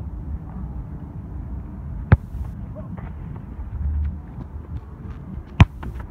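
A football kicked hard twice, about three and a half seconds apart: two sharp thuds, the first about two seconds in and the second near the end. Low wind rumble on the microphone underneath.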